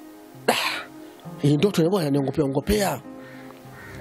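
A man coughs once, a short, sharp burst about half a second in, then goes on speaking, over a steady background music bed.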